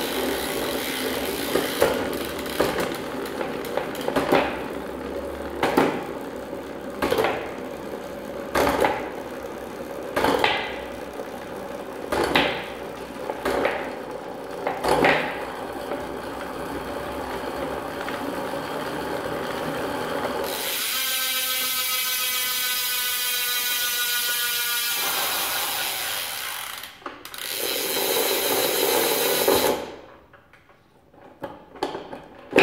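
A road bike drivetrain turned by hand on a workstand: a Shimano Dura-Ace chain running over the chainring and rear cassette with a steady whir. For the first half there are sharp clicks about every second and a half as the gears are shifted. Later comes a smoother whir with a rising tone, then it stops suddenly; the owner finds the chain still a bit tight on the narrow-wide chainring.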